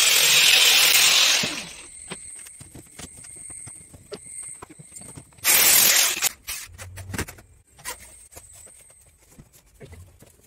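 Handheld electric disc cutter cutting PVC ceiling panels in two short loud bursts, about a second and a half at the start and under a second about five and a half seconds in. Light knocks and clicks from handling the panels in between.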